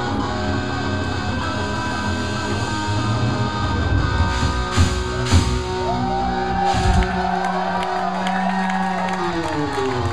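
Live rock band playing loud through the PA, electric guitars and drum kit ringing out on the song's closing bars, with two cymbal crashes about five seconds in and another a couple of seconds later. In the last few seconds, held notes slide up and down in pitch.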